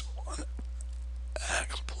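Soft, half-whispered speech in short snatches over a steady low hum.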